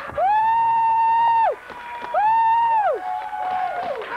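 A high voice holding long 'woo'-like notes: a long one and a shorter one, each sliding up at the start and dropping away at the end, then a softer, lower note near the end.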